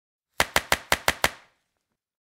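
A quick run of seven sharp, evenly spaced clicks lasting about a second, starting about half a second in. They are a sound effect for the animated end logo, where the logo's elements pop into place.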